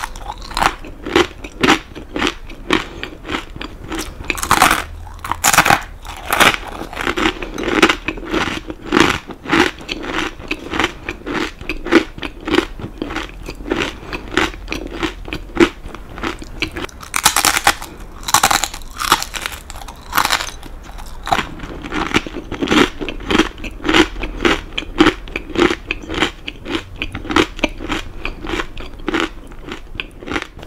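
Close-miked crunching and chewing of a crisp cheese cracker made with kakinotane rice crackers, rapid crunchy chews all through. Louder sharp bites come about four to six seconds in and again around seventeen to twenty seconds.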